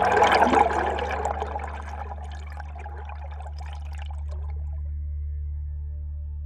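A burst of rushing, splashing water, loudest in the first second and fading away over the next few seconds, over a steady low drone.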